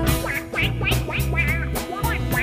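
A jazz band playing live: double bass and drums under a quick melody line of short notes that bend and scoop in pitch, with soprano saxophone and electric guitar in the band.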